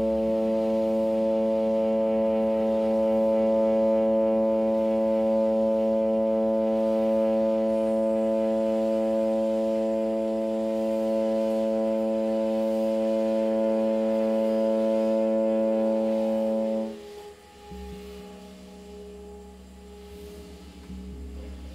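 Tenor saxophone holding one long low note: a steady drone rich in overtones. After about seventeen seconds it stops abruptly, leaving quieter low sounds.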